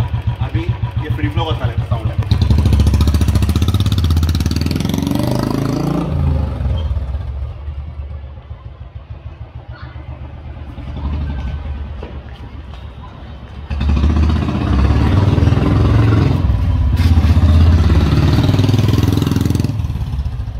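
Royal Enfield Classic 350 single-cylinder engine through an adjustable stainless aftermarket silencer set to its loud 'Mini Punjab' setting: thumping at idle, then getting louder as the bike pulls away about two seconds in. It fades as the bike rides off and grows loud again from about two-thirds of the way through as it rides back past.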